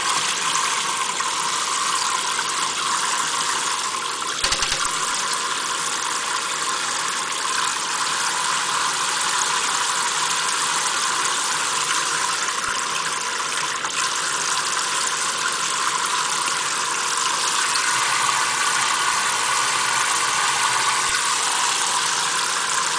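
Kitchen faucet stream running steadily, splashing onto an African grey parrot and into a stainless steel sink as an even hiss. There is one brief knock about four and a half seconds in.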